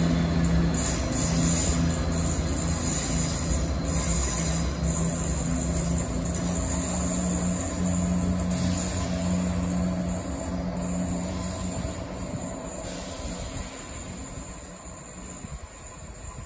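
Class 170 Turbostar diesel multiple unit running away down the line, its engine and transmission giving a steady humming drone with a low rumble that fades as the train recedes.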